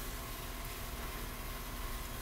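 Steady background hiss with a low rumble underneath, unchanging throughout, with no distinct event.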